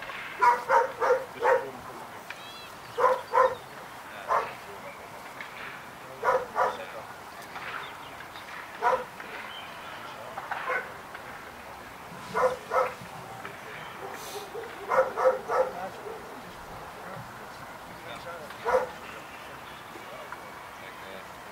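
A dog barking in short bursts of one to four sharp barks, about ten bursts spread unevenly with pauses of a second or more between them.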